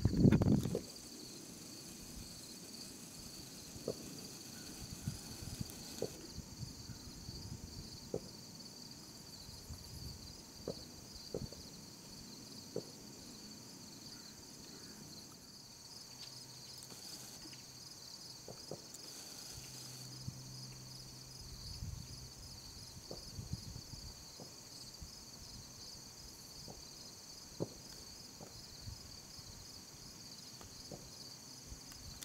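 Faint, steady insect chorus: a continuous high chirring that pulses evenly, with a few scattered soft ticks and rustles.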